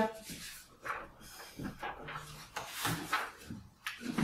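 Paper pages of a hardback book rustling as they are handled and turned by hand, in several short scratchy strokes.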